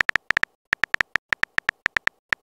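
Synthetic keyboard typing sound effect from a texting-story animation: a short, high tick for each letter typed, about eight a second in an uneven rhythm.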